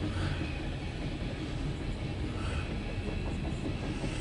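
CSX mixed freight train's cars rolling past, a steady noise of steel wheels running on the rails.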